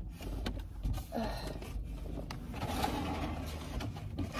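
Low rumble of a car running, heard inside the cabin, with a few light clicks and knocks.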